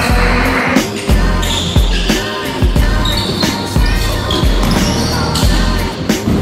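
Background music with a steady thudding beat and a deep bass line.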